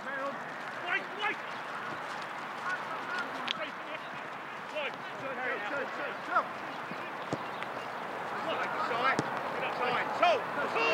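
Distant, unintelligible shouts and calls from footballers across the pitch, over a steady background hiss of outdoor noise.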